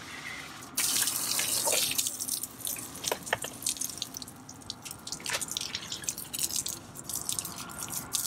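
Water from a dump-station rinse hose spraying onto an RV sewer hose and splashing on the concrete pad as the hose is rinsed out after the tanks are dumped. The spray hiss starts suddenly about a second in and is strongest for the next second, then carries on weaker with scattered splashes and drips.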